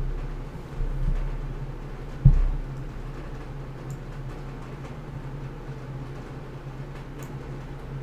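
Steady low hum of room and recording noise, with one dull low thump a little over two seconds in and a couple of faint clicks later.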